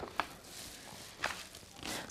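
A page of a picture book being turned by hand: a few soft paper rustles and flicks.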